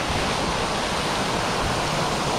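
Fountain water jets splashing steadily: a tall central jet and a ring of smaller jets falling into the basin, an even rushing hiss.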